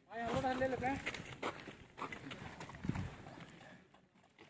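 A person's voice for about the first second, then a few scattered short taps and knocks, likely footsteps and movement of people stretching on dirt ground.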